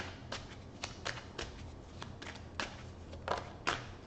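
Tarot cards being shuffled and handled by hand: a dozen or so irregular light snaps and taps.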